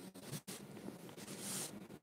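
Faint room tone with a low steady hum and brief soft rustling, strongest about one and a half seconds in.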